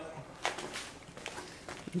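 Quiet pause at an outdoor range: faint steady background hiss, with one short, faint sharp click about half a second in.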